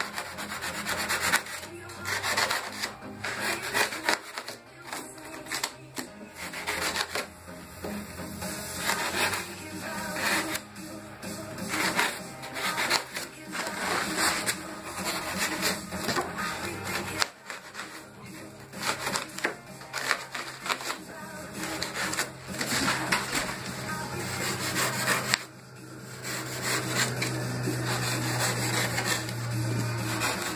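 A knife cutting and scraping through expanded polystyrene foam (styrofoam) in quick, irregular strokes that squeak and rasp. A steady low hum runs underneath and gets louder in the last few seconds.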